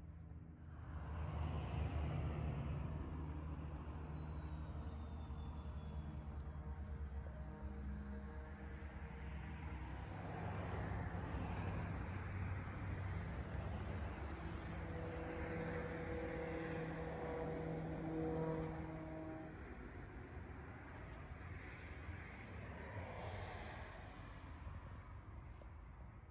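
A distant engine rumble that swells about a second in and again for several seconds mid-way. A faint high whine falls slowly in pitch over the first several seconds.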